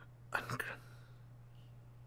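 A short, breathy whispered voice sound about half a second in, then only a faint steady low hum.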